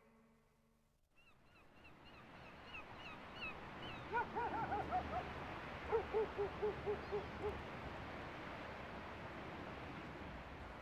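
Gulls calling over a steady outdoor background that fades up about a second in: first a run of short high calls, then lower calls falling in pitch, repeated about four a second.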